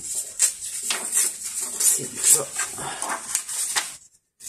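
A sheet of paper being torn by hand in one long, uneven rip that crackles irregularly and stops just before the end, leaving a rough, distressed torn edge.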